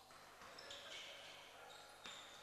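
Faint court sounds of a basketball game: a basketball being dribbled on a hardwood floor.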